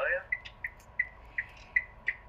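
A rapid train of short, evenly spaced high-pitched electronic beeps, about three a second, over a faint steady tone. It follows the tail of a voice coming through a phone's speaker.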